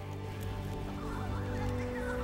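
Slow, atmospheric background music built on sustained low tones, with a wavering, gliding higher sound laid over it.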